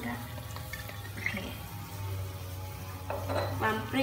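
Fish soup bubbling at a boil in a wok, over a steady low hum.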